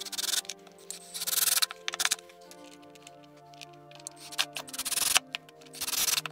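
Cordless drill driving screws into a toilet mounting bracket in several short bursts, over background music.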